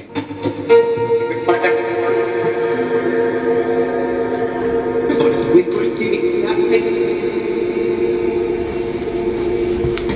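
Ghost box output from the SCD-1 spirit box app played through a Portal echo box: a loud, continuous wash of several held, overlapping tones, layered like a drone or choir.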